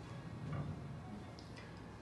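Quiet room tone with a steady low hum and a couple of faint ticks.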